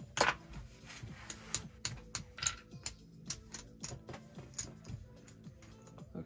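Sharp, irregular clicks of casino chips and cards being gathered off the felt as a losing blackjack bet is cleared, with a brief sliding swish right at the start. Soft background music plays underneath.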